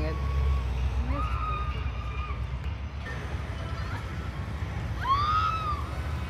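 Steady low rumble of a car driving, heard from inside the cabin, with faint voices now and then and a brief rising-and-falling call about five seconds in.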